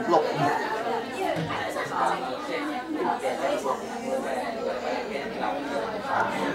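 Background chatter: several people talking at once, overlapping voices with no single clear speaker.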